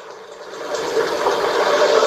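Vehicle road and engine noise, rising steadily in level from about half a second in.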